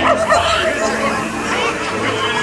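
Ride show soundtrack: recorded pirate voices shouting, with a dog barking among them.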